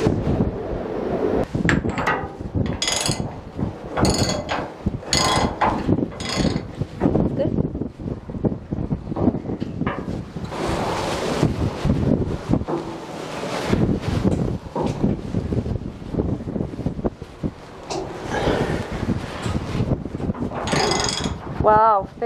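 Metal clicking and clattering of a wrench and nuts being worked onto the bolts that hold the anchor winch down to the deck, with many sharp clicks in the first half.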